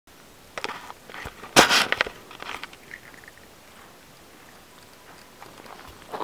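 Footsteps crunching on gravel, a handful of steps in the first two and a half seconds, the loudest about one and a half seconds in.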